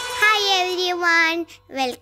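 A child's high voice calling out one long, drawn-out sing-song syllable, then a short second syllable near the end, as the start of a spoken greeting.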